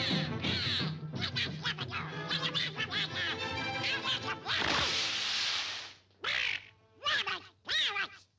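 Orchestral cartoon score plays for the first half. About five seconds in, a falling glide drops into a noisy crash-splash lasting about a second. Then Donald Duck's cartoon quacking voice sputters in short bursts near the end.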